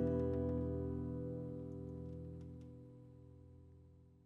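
The band's last chord on bass and guitars ringing out and fading away to silence, with no new notes struck.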